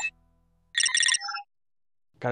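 A quick run of high electronic computer beeps about a second in, ending in a few lower tones, in the style of a starship computer panel. Just before them, music cuts off.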